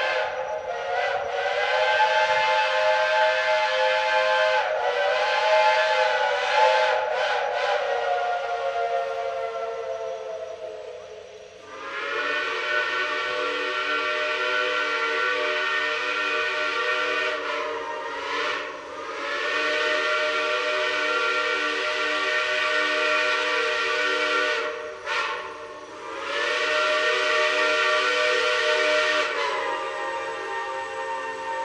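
Steam locomotive whistles blowing long, held chime blasts. A higher chord wavers and fades out about ten seconds in, then a lower-pitched chord sounds from about twelve seconds on, with two short breaks.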